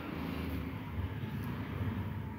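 Hot cooking oil sizzling in an iron kadai after mustard seeds have spluttered in it, an even frying hiss with a few faint ticks, over a steady low rumble.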